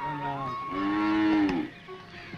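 Cow mooing: a short low call, then one longer moo that stops shortly before the end.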